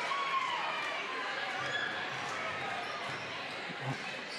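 Gymnasium game ambience: a steady crowd murmur in a large hall, with a basketball being dribbled on the hardwood court.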